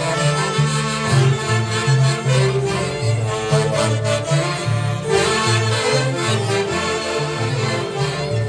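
A Peruvian orquesta típica playing live: saxophones and clarinets carry the melody over a violin, with a steady bass line of alternating low notes plucked on the Andean harp.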